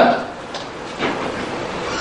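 A man's lecture voice trails off at the start, leaving a pause filled with a steady background hiss and rumble of the recording.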